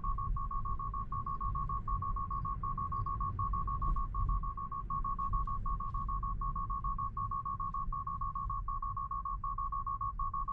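Tesla Model 3's 'take over immediately' alarm: high rapid beeping in quick bursts of about five, roughly two bursts a second, going on without a break as Autopilot demands that the driver take control. A low rumble of the slowly rolling car runs underneath.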